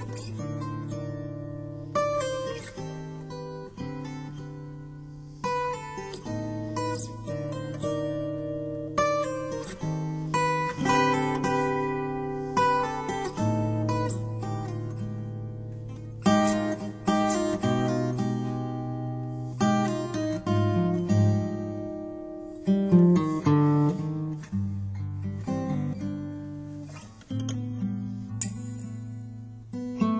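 Background music on solo acoustic guitar: plucked notes and strummed chords, each ringing and fading before the next.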